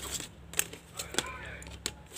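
A few sharp clicks and light taps, spread about half a second apart, as a paintbrush and a clear plastic acrylic paint case are handled on a table, with a faint murmur of voice.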